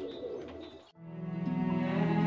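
Pigeons cooing, as courtyard ambience. About a second in, after a brief dip almost to silence, a slow background music cue of sustained tones swells in.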